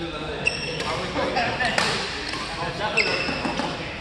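Badminton rally: a few sharp racket-on-shuttlecock hits spaced about a second apart, with short squeaks of court shoes on the floor. Voices murmur underneath.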